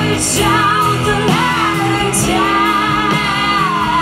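Live indie rock band playing a song: women singing lead and backing vocals over electric guitars, bass, keyboard and drums, with one long held sung note in the second half.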